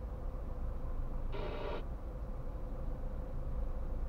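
Low, steady rumble inside the cabin of a car standing still at a junction, with a faint steady hum. About a second and a half in comes one brief pitched tone, about half a second long.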